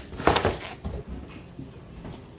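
Items in a box being rummaged and handled: a louder clatter early, about a quarter second in, then a few lighter knocks and rustles.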